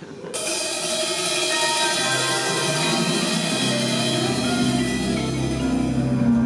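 A live jazz ensemble starts playing about a third of a second in, with sustained chords and cymbal shimmer. Lower instruments join after about two seconds, and a deep bass comes in after about four and a half.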